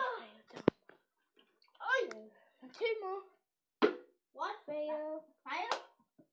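Children's voices talking and exclaiming, broken by a sharp click just under a second in and another a little before four seconds in.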